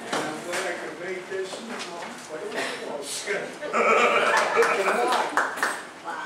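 Indistinct speech in a large meeting hall, louder for a couple of seconds a little after the middle.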